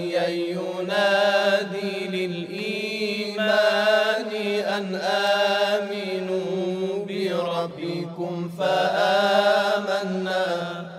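Chanted vocal music over a steady low drone, the voice moving in phrases that rise and fall with short breaks between them.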